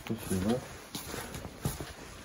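A short muffled spoken word near the start, then quiet background with a few soft clicks or knocks.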